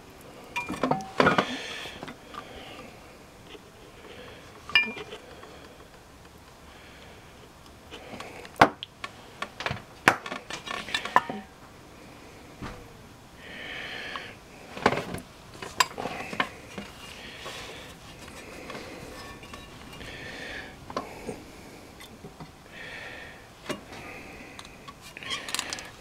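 Irregular metal clinks and knocks from a 2008 Ford Focus front brake caliper bracket and its slide pins being handled and worked into their rubber boots, with short scraping sounds in between.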